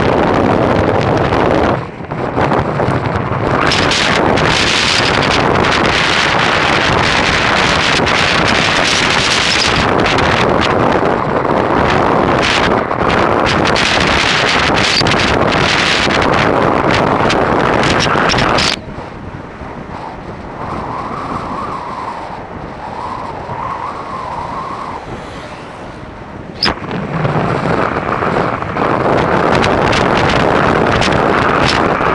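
Wind buffeting the microphone of a camera on a bicycle riding fast down a mountain highway, heard as a loud, steady rushing noise. About two-thirds of the way through it dies down to a softer rush for several seconds, then picks up again shortly before the end.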